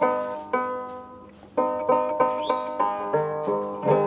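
Handmade fretless banjo being played: plucked notes that ring and die away, two slow notes and then a quicker run of notes from about a second and a half in.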